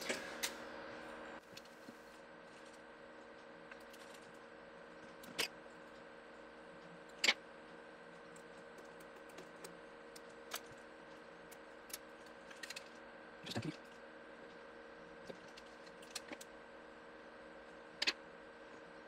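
Sparse small clicks and taps of through-hole resistors and their wire leads being handled on a desk, about a dozen in all and irregularly spaced, over a faint steady electrical hum.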